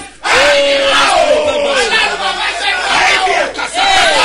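A man crying out loud, fervent prayer in several long, drawn-out shouts, each holding a pitch and then falling away.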